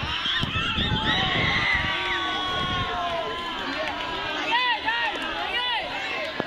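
Young spectators shouting and calling out, several high-pitched voices overlapping, with long drawn-out shouts in the first half and shorter calls later on.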